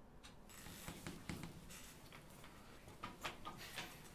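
Faint, irregular small clicks and rattles over a light hiss, with a few clustered together about a second in and again near the end.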